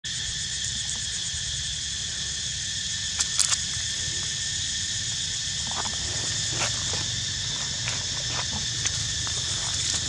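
Steady high-pitched insect chorus buzzing without a break, with a few short clicks and rustles over it, the loudest a cluster about three seconds in.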